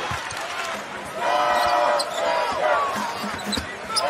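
Basketball dribbled on a hardwood court during live play, with the arena's game noise around it. A louder held, pitched sound comes from about one to two seconds in.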